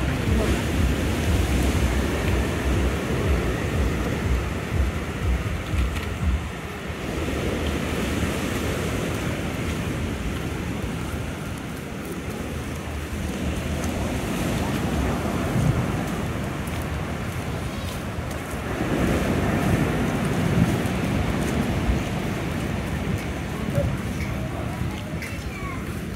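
Wind buffeting a handheld microphone, heaviest for the first several seconds, over a steady wash of outdoor noise with faint voices on a seaside promenade.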